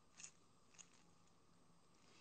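Near silence: room tone, with two faint small clicks early in the pause.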